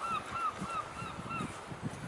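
A bird calling in a run of short, repeated arched notes, about three a second, which fade out about a second and a half in.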